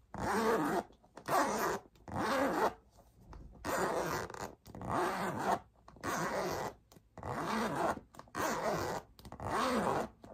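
A handbag's top zipper being run back and forth over and over, about one stroke a second, each a short rasping zip.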